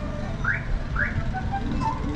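Two quick rising whistled notes, about half a second apart, over Peruvian folk flute music playing in the background.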